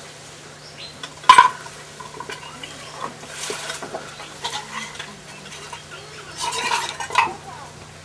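Kitchen utensils clinking and scraping against cookware, with one sharp, loud metallic clank just over a second in and stretches of scraping later on.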